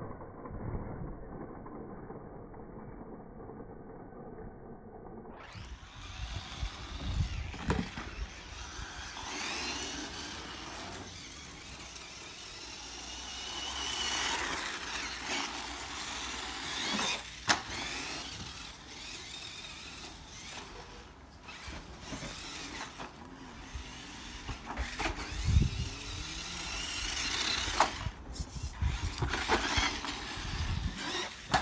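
Tamiya Comical Avante electric RC buggy running on a concrete path and over ramps: its motor and gears whine, rising and falling with the throttle, over tyre noise, with several sharp knocks as it lands. The first five seconds or so are muffled.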